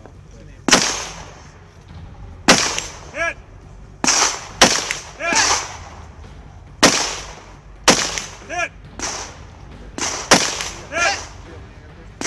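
A string of single gunshots, about ten, one every second or two. Several are followed about half a second later by a short shouted "Hit!" calling a hit on the target.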